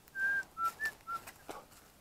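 Four short, clear whistled notes in the first second or so, alternating higher and lower in pitch, followed by a single faint click.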